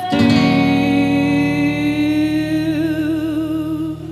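A woman singing one long held note into a microphone over a karaoke backing track, her vibrato widening in the second half; the note fades near the end.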